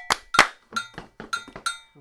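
Three sharp hand claps followed by three foot stomps, with a gankogui iron bell struck at an even pulse underneath, ringing briefly after each strike as it keeps the timeline.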